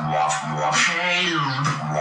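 Beatbox vocal bass: a held low buzzing throat drone, its tone sweeping and bending through the middle.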